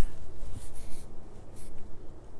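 A pause in speech: quiet room tone with faint, soft rustling.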